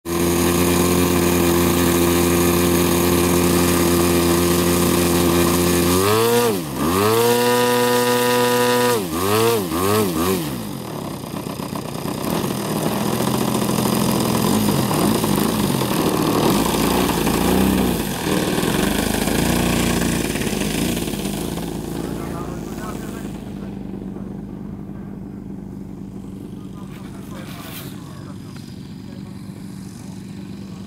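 Engine of a large radio-controlled Yak 55 aerobatic model airplane running steadily close by, its pitch dipping and rising back twice, about six and nine seconds in, as the throttle is worked. From about ten seconds it runs less evenly, then fades steadily from about eighteen seconds as the plane moves off across the field.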